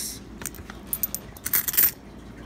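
Nickels clinking against one another as they are handled and set on a pile: a few light clinks, then a quick run of them near the end.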